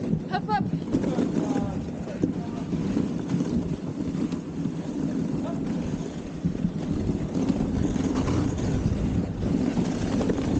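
Dog sled running along a snowy trail: a steady rumble and hiss from the sled moving over the snow, with wind on the microphone. A brief high-pitched call sounds about half a second in.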